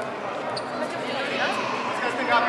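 Indistinct talking among people in a large hall, with no music playing.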